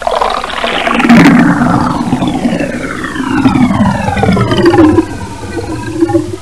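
Cartoon sound effect of liquid pouring and gurgling into a glass. Several tones glide steadily downward through it for about five seconds, and it eases off near the end.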